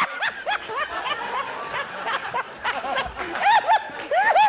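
Snickering laughter: a rapid string of short notes that each rise and fall in pitch.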